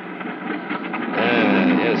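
A man's voice with a drawn-out, wavering sound starting just over a second in, over a steady low hum.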